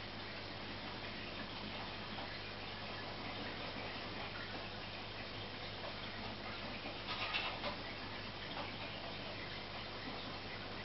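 Aquarium filter running: a steady low hum with water trickling and bubbling at the surface. A brief louder rush of water comes about seven seconds in.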